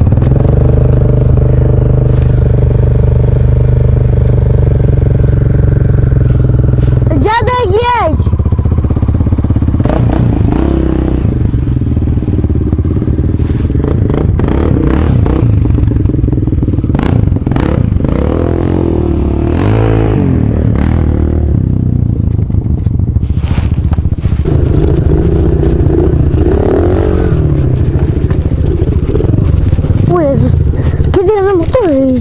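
Dirt bike engine running as it is ridden, close to the rider: steady at first, a quick high rev about eight seconds in, then the revs rising and falling repeatedly with the throttle.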